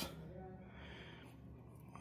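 Quiet background with a faint, steady low hum and no distinct sound event.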